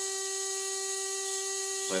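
Small home-built asymmetrical electric motor running at a constant speed off a 12 volt battery: a steady whine made of a few fixed tones.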